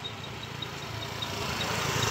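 A motor vehicle engine idling, a low steady hum that grows louder toward the end, with short high chirps repeating about six times a second over it.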